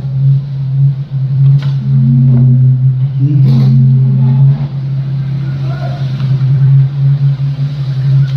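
A loud, steady low hum, with a few short, faint voices over it.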